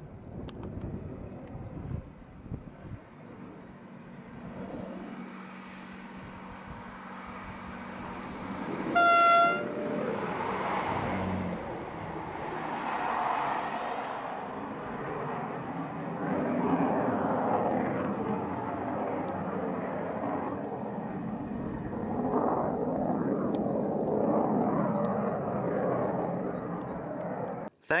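Class 158 diesel multiple unit sounding a single short horn note about nine seconds in, then running past close by, its diesel engine and wheels on the rails building into a steady rumble that lasts until the train is gone.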